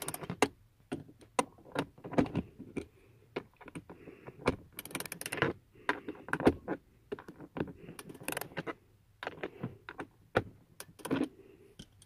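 Hand ratchet with a socket driving a screw in: irregular runs of small metallic clicks from the ratchet, with tool-handling knocks between them.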